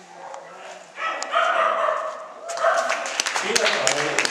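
A dog barking and yipping excitedly during an agility run. Sharp claps start about two and a half seconds in.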